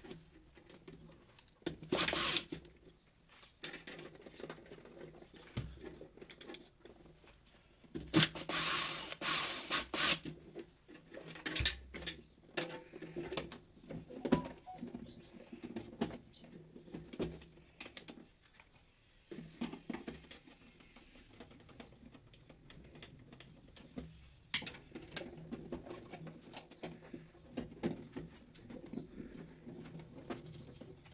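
Hands handling insulated wires and pushing them into plastic slotted wiring duct in an electrical panel: scattered rustling, scraping and small clicks, with louder rustling bursts about two seconds in and again from about eight to ten seconds.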